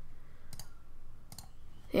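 Computer mouse clicks: two short, sharp clicks about a second apart.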